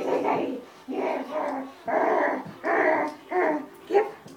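An excited dog vocalising in about six short bursts, roughly one every half to one second, while being held back just before a release to run.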